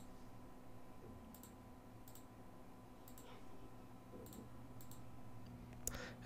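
Faint computer mouse button clicks, about six or seven, spaced irregularly, over a faint steady electrical hum.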